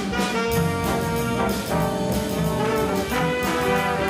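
Jazz big band playing, brass to the fore: trombones and trumpets hold and move through chords over steady cymbal time from the drum kit.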